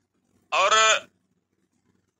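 A man's voice saying one drawn-out word, "aur" ("and"), about half a second long, with its pitch falling; otherwise near silence.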